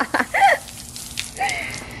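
Garden hose spray nozzle running, a steady hiss and patter of water on the man and the concrete, with a man's short wordless exclamations in the first half second and again about a second and a half in.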